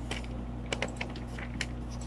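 Computer mouse and keyboard clicks: several short, sharp clicks, bunched near the middle, over a steady low electrical hum.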